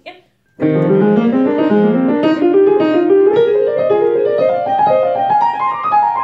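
Two pianos played together, a quick passage of notes climbing steadily in pitch from low to high. It starts about half a second in, right after a spoken count-in.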